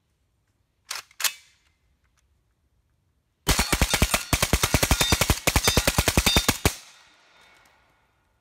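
Suppressed Micro Draco AK in 7.62x39 with a Franklin Armory binary trigger: two quick shots about a second in, then a rapid string of roughly thirty shots over about three seconds, firing on both pull and release in a mag dump.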